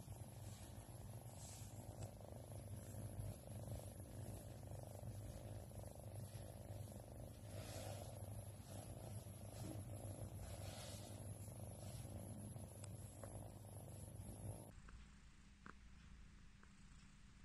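White long-haired cat purring steadily and softly while its head is stroked; the purr stops near the end.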